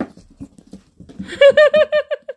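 Small dog giving a quick run of about seven short high-pitched yips while playing, starting about halfway through, after some light scuffling of play with a plastic bottle.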